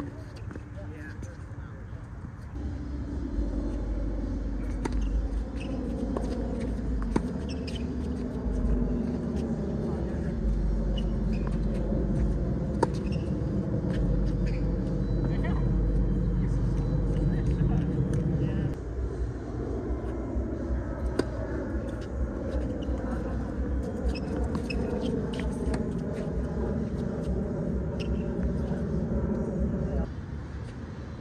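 Low, steady engine rumble like a motor vehicle running nearby, which drops off sharply about two-thirds of the way through, with indistinct voices and a few sharp knocks scattered through.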